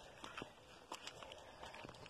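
Faint footsteps on a dirt path: a few soft, scattered scuffs over a quiet background.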